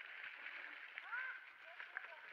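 Mountain bike tyres rolling over a leaf-covered dirt trail, a steady faint hiss with a few light clicks. About a second in there is a brief faint squeak that glides up and back down.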